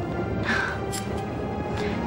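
Background music from the drama's soundtrack, with short, sharp high sounds cutting in about half a second in and again near the end.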